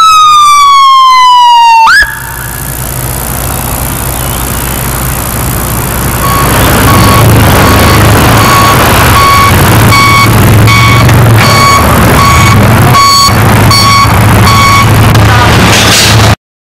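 Ambulance siren: a loud wail sliding down in pitch, breaking off sharply about two seconds in, followed by a loud noisy rush over which a steady beep repeats about one and a half times a second.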